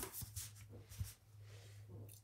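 Paper handling on a disc-bound planner: a loose page shifted back onto the discs and smoothed flat by hand, giving a few soft rustles and light clicks. A steady low hum runs underneath.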